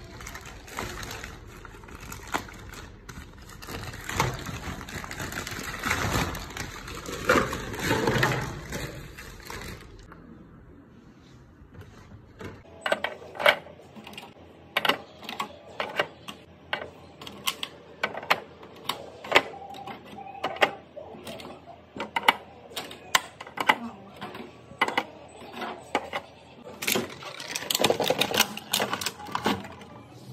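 Clear plastic shrink-wrap crinkling and tearing as it is pulled off a pack of plastic bottles, for about ten seconds. After a short lull, eggs click and tap one after another as they are set into a plastic egg tray, many light sharp taps with a denser rustle near the end.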